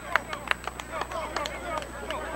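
Sharp claps, about three a second, with shouting voices from the crowd and sideline at a football game.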